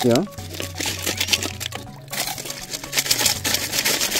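Gravel rattling inside a plastic water bottle as it is shaken, with dense clicking from about halfway through, over background music.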